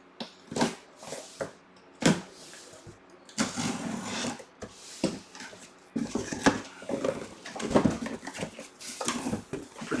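A cardboard box and its packing being handled and opened: a few sharp knocks and clicks in the first two seconds, then stretches of scraping and rustling.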